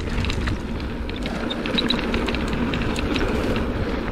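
Mountain bike coasting along a packed-dirt singletrack: a steady rolling noise from the tyres on the trail, with a few small clicks.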